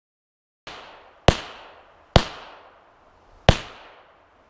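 9mm gunshots fired into a car door: a quieter bang about two-thirds of a second in, then three sharp shots spaced about one to one and a half seconds apart, each with a short decaying echo.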